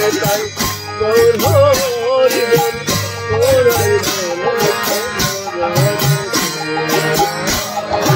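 Harmonium playing sustained kirtan chords, with hand claps keeping a steady beat. A voice sings a wavering melody over it in the first half.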